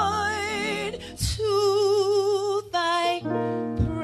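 A woman singing a slow song solo into a microphone with wide vibrato, over sustained electric keyboard chords. She holds long notes, with a short break about a second in and quicker notes near the end.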